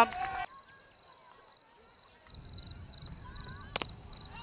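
Insects chirring in the grass around the ground: a steady, high-pitched pulsing trill that never breaks. A single sharp knock comes near the end.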